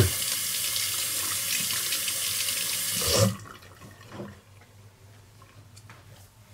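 Water running steadily from a bathroom tap into a sink, then shut off about three seconds in.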